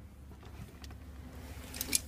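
Handling and movement noise inside a car cabin: a few faint clicks, then a loud rustling scrape near the end as the handheld camera is swung across the dashboard, over a steady low hum.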